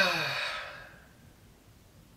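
A man's long, voiced sigh, falling in pitch and fading out over about the first second.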